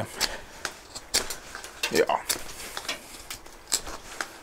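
A large folding knife's steel blade carving dry hazel wood: a string of short, sharp shaving cuts at an uneven pace, about two a second, as chips come off the stick.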